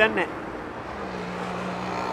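Busy street traffic: a steady wash of road noise, with a low, steady engine hum coming in about halfway through as a bus passes close by.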